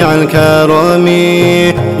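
Male voices singing an Arabic nasheed, drawing out the end of a phrase in a melismatic run that settles into a long held note with layered voices.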